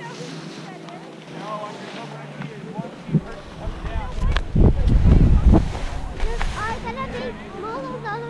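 Wind buffeting a GoPro's microphone while skiing, in uneven low rumbling gusts that are loudest from about three to six seconds in, over the hiss and scrape of skis on soft slushy snow. Faint voices sound underneath.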